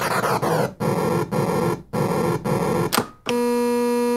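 Circuit-bent effects keychain toy rebuilt as a drum machine, making a harsh, noisy electronic buzz with pitch sweeping downward at first. The noise breaks off briefly three times. About three seconds in it switches to a steady pitched electronic tone.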